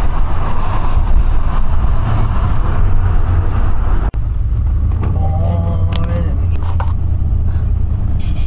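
Road noise of a moving vehicle heard from inside: a loud steady low rumble with rushing tyre and wind noise. It cuts out for an instant about halfway through, then goes on.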